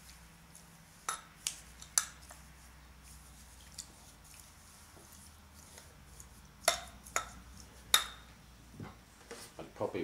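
Metal scissor blades clinking against a glass jar while pressing steel wool down into it. There are three sharp taps about a second in and three more around seven seconds in.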